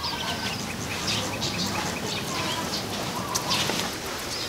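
Small birds chirping: many short, scattered chirps over a steady background hiss.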